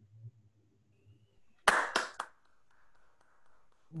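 Three or four quick hand claps about two seconds in, heard over a video call after a reading ends, with a faint low hum before them.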